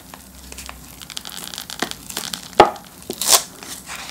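Wafer shell of a fish-shaped ice-cream sandwich being pulled apart by hand, crackling and tearing through the ice cream. It gives a run of small crackles, then two louder cracks about two and a half and three and a third seconds in.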